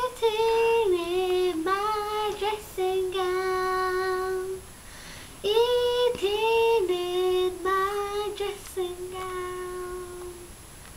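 A girl singing solo, in two phrases of long held notes that step down in pitch, with a short break about halfway.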